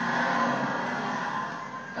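Voices held in a steady, drawn-out sound, without the breaks of ordinary speech.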